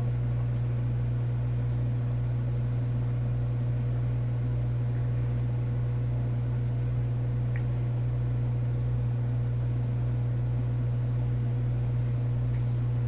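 A steady low hum with a faint higher tone over it, unchanging in level, and a single faint tick about seven and a half seconds in.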